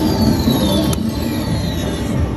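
Casino floor din around a slot machine: a steady wash of machine and room noise, with a high electronic tone sliding downward over about a second and a sharp click about a second in.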